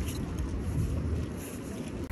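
Low, steady outdoor rumble of wind on the phone's microphone mixed with city street noise, picked up while walking along a sidewalk.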